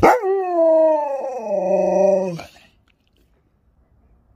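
Alaskan malamute 'talking': one long, howl-like woo that falls in pitch and steps down partway through, lasting about two and a half seconds.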